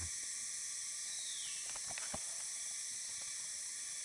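Steady high-pitched drone of forest insects, with a short falling whistle about a second and a half in and a few faint clicks around two seconds.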